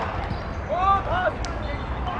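Outdoor youth football match: short high-pitched shouts of young voices about a second in, with ball thuds, over a steady low wind rumble on the microphone.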